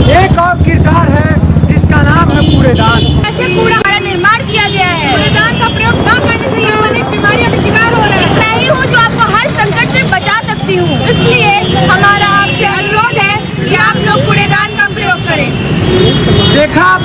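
Several voices calling out together, overlapping, in the manner of street-play performers delivering slogans. Under them a steady low rumble cuts off about three seconds in.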